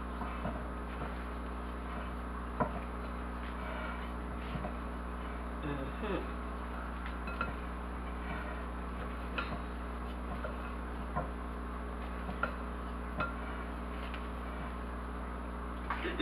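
Silicone spatula folding egg whites into cake batter in a glass mixing bowl: light scrapes and scattered taps against the glass, over a steady low hum.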